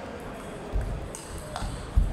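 Table tennis rally: the ball clicks sharply off the bats and the table about four times, the loudest near the end.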